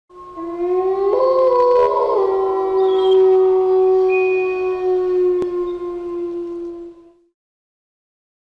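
Wolves howling together: several long overlapping howls that rise at the start, then hold steady and die away about seven seconds in. There is a single faint click partway through.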